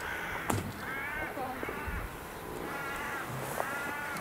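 Crows cawing at a distance: about four short, faint caws spread through a few seconds.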